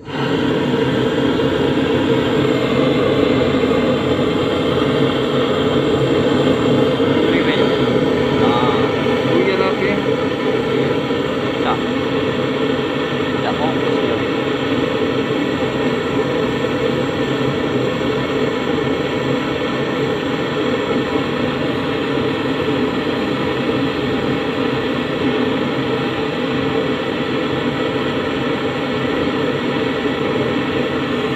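Handheld butane canister torch burning with a steady rushing hiss as its flame heats the copper high-side pipe joint on a freezer compressor to unsolder it.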